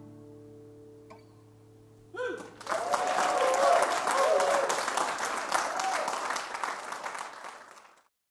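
The last acoustic guitar chord ringing out and dying away. A little after two seconds in, the audience breaks into applause and cheering, which fades out near the end.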